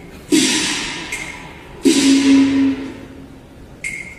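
Cantonese opera percussion: two crashes of gong and cymbals about a second and a half apart, each ringing on for about a second.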